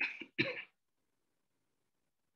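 A person coughing twice in quick succession, two short bursts about half a second apart at the very start.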